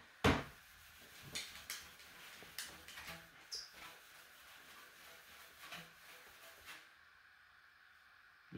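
A PVC pipe being rubbed with a microfiber cloth to charge it: a sharp click near the start, then scattered soft clicks and rustles that stop about a second before the end.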